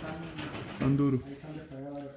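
A man's voice, speaking or murmuring with no clear words.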